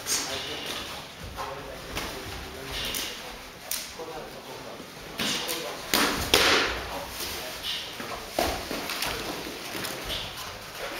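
Boxing sparring with gloved punches landing in irregular thuds and slaps, mixed with short hissing bursts of breath from the boxers as they throw. The loudest exchange comes about six seconds in.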